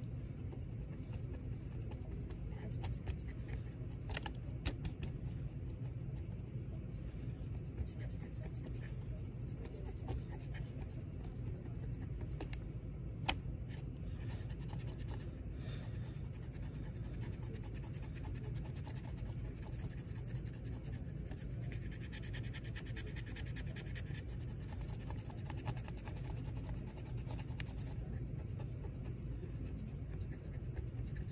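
Cotton swab rubbing and scrubbing over the plastic side of an HO-scale model gondola, wiping off excess weathering wash: a faint scratchy rubbing over a steady low hum, with a few light clicks and one sharp tick about thirteen seconds in.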